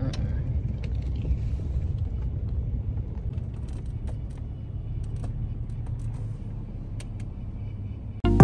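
Steady low rumble of a car heard from inside the cabin, easing slightly, with a few faint clicks.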